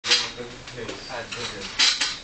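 Voices in a small room, with two brief clattering bursts, one at the very start and one near the end, from a wobbling stack of metal-framed school chairs with someone standing on top.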